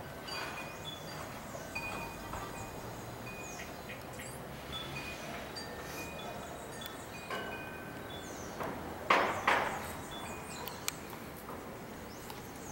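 Wind chimes tinkling: short, high, clear tones at scattered pitches, with a few faint quick chirps among them. Two brief loud bumps come about nine seconds in.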